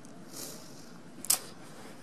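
A soft brushing noise, then a single sharp click a little over a second in.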